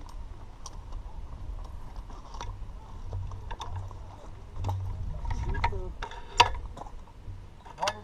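Scattered metallic clicks and knocks from bicycles over a low steady rumble, with one sharp, louder click about six seconds in and another near the end.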